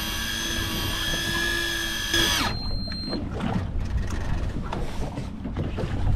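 Electric deep-drop fishing reel whining steadily as its motor winds in the line with a fish on, rising briefly in pitch before cutting off sharply about two and a half seconds in as the fish nears the surface. Wind and water noise follow.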